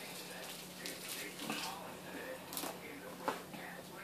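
Faint handling sounds as a cardboard cake board is shifted and turned on a tabletop, with one sharp knock a little after three seconds in, over a steady low electrical hum.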